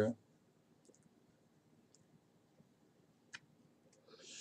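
Near silence broken by a few faint computer-mouse clicks, the loudest one a little before the end.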